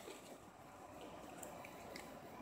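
Near silence: room tone, with a few faint soft ticks from trading cards being handled.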